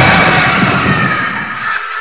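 Fading tail of a loud cinematic boom hit on a title card: a dense, noisy wash that dies away steadily, its low rumble dropping out near the end.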